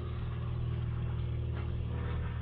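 A steady low engine hum running evenly, with no change in pitch or level.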